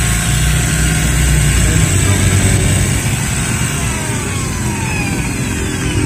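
Bosch GBM 350 electric drill running with no load after its worn spindle bushing was replaced with one made from a bearing, running steadily. Its pitch falls in the last couple of seconds as it slows.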